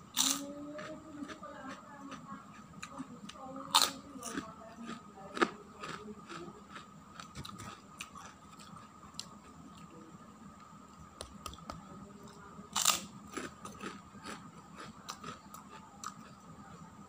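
Close-up crunching and chewing of crisp fried crackers (kerupuk): four loud crisp bites, just after the start, near four seconds, at about five and a half seconds and near thirteen seconds, with softer crackling chews between them.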